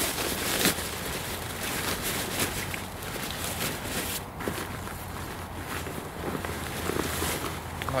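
Rustling and crinkling of a nylon backpack rain cover being pulled over a pack and drawn around it, with a steady low wind rumble on the microphone.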